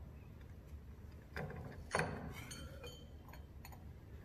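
Glass and metal clinks as a deflagrating spoon is lowered into a glass gas jar and the jar's glass cover plate is lifted off. A knock comes about a second and a half in, a sharper, louder one about two seconds in, then several light clinks.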